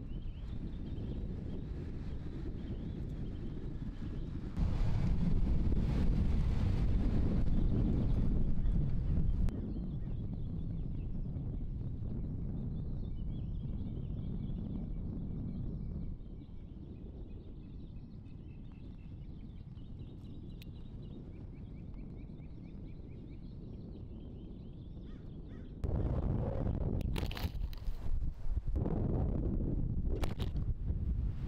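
Wind rumbling and buffeting on the microphone in open desert, its strength shifting from shot to shot and gusting hardest near the end. Faint high bird chirps sound through it in the middle stretch.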